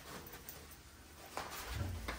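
Rolef roll-up bug screen being pulled down over a van's rear door opening: a faint rustle of the fabric, a click about one and a half seconds in, and a low thump near the end.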